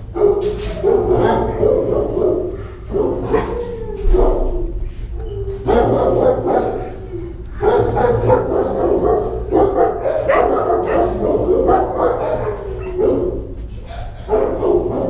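Dogs barking in shelter kennels: a near-continuous run of overlapping barks with a few short lulls.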